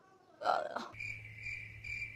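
Crickets chirping: a steady high-pitched trill pulsing about three times a second over a low hum, starting about a second in, after a short breathy sound.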